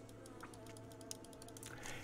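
Faint, scattered light clicks and ticks from a black carbon bicycle stem being handled and shifted in the hand over a paper-covered table.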